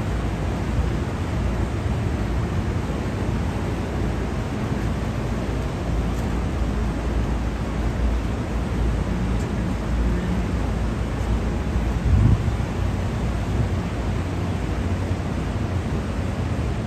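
Rooftop air-conditioning units and ventilation ducts running: a steady low rumble with a faint hum. A brief louder low bump comes about three quarters of the way through.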